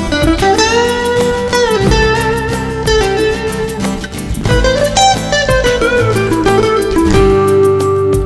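Instrumental break of a rock ballad: a lead guitar plays a melody of held, bending notes over the backing band.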